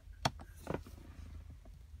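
A single sharp plastic click from a car's heated-seat rocker switch being pressed, about a quarter second in, followed by a few faint handling clicks, over a faint low steady hum.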